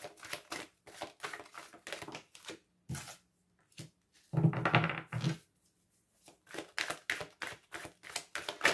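A deck of oracle cards being shuffled by hand: quick runs of soft card flicks and slaps, with a louder burst of rustling about four and a half seconds in, then more shuffling near the end.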